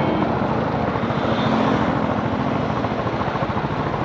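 Motorcycle riding at speed: steady wind rush over the microphone with the engine's even hum underneath.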